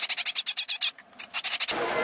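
Great tit nestlings begging while being fed: rapid runs of thin, high calls, about a dozen a second, with a short pause about a second in.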